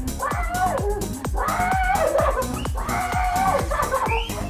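Background dance music with a steady beat, with a high wavering voice over it.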